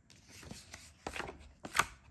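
A hand brushing scratch-off shavings off a tile surface: a few quick sweeping strokes, the last one the loudest, near the end.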